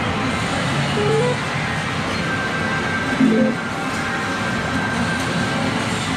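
Medal-game arcade din: a steady wash of machine noise and electronic music from the games, with a short pair of rising notes about a second in and a brief louder jingle a little past three seconds as the video slot spins.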